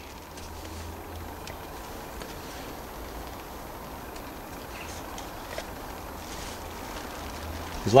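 Fingers brushing and pressing multi-purpose compost over sown seeds in small plastic pots, soft and faint, over a steady background hiss.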